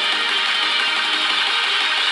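Electronic music playing through the OnePlus 6's single bottom loudspeaker, thin, with almost no bass.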